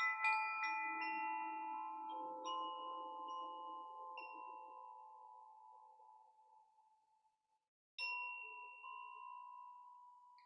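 A hand-held wooden-tube chime, swung gently so that several bright, clustered tones strike quickly one after another at the start and then ring out, fading over about seven seconds. It is swung again about eight seconds in and rings on.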